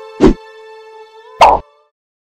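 Film soundtrack music: a held, droning chord struck by two sharp, deep hits about a second apart. The music stops just before the end.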